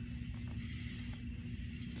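A steady low hum with a faint hiss, unchanging throughout.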